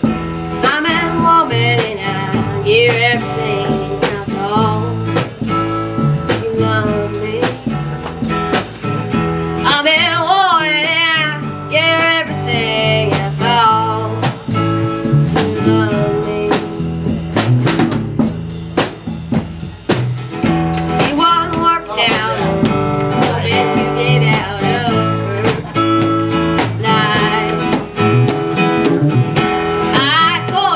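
A live blues-folk band plays at a steady beat: a singer with acoustic guitar, bass and drum kit. Sung phrases with a wavering pitch come in and out, with gaps between verses around 6–9 s and 15–20 s.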